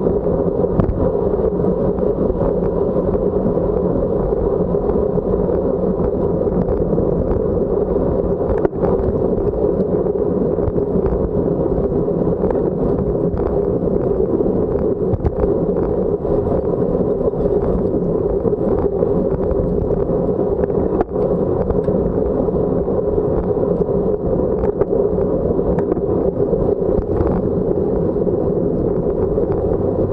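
Steady rush of wind on the microphone of a camera riding on a road bike at racing speed, over a low rumble of tyres on pavement, with a few small clicks.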